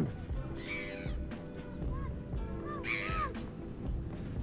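Gulls calling overhead: several short, harsh calls, the loudest about three seconds in.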